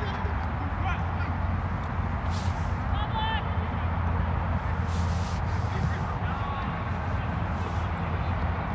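Outdoor soccer-pitch ambience: a steady low hum with faint, distant players' voices, and a short shout or call about three seconds in.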